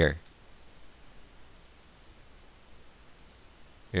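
Faint computer mouse clicks, a few scattered single clicks over low room hiss.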